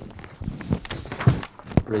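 Sheets of paper being handled and leafed through on a desk, with a few sharp rustles and taps.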